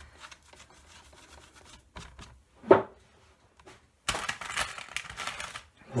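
A baby wipe rubbing and rustling against an inked stamp on a clear acrylic plate as the ink is cleaned off. There is one sharp knock about two and a half seconds in, and louder, harsher scrubbing over the last two seconds.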